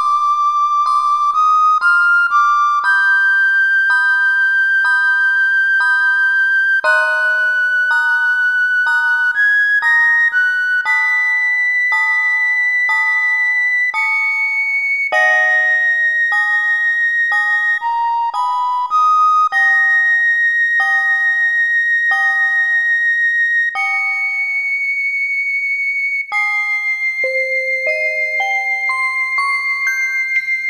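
Sopranino recorder and celesta playing a slow prelude. The recorder holds long, high notes with a light vibrato, moving slowly up and back down, while the celesta strikes notes about once a second that ring and fade beneath it.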